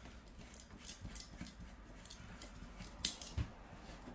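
Faint scattered clicks and taps of a plastic gooseneck phone holder's screw clamp being handled and tightened onto a desk edge, with one sharper click about three seconds in followed by a low thud.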